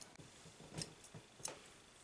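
Faint clicks and knocks of a camera being handled and repositioned, a few separate ticks over a quiet room.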